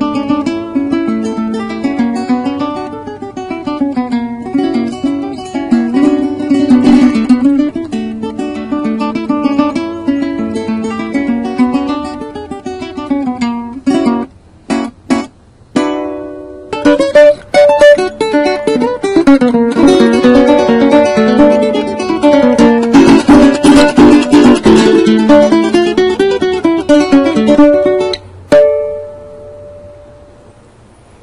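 Venezuelan cuatro, a small four-string nylon-strung guitar, played solo: a fast picked melody over chords. Around the middle the playing stops briefly for a few separate sharp chords, then carries on, and a final chord near the end rings out.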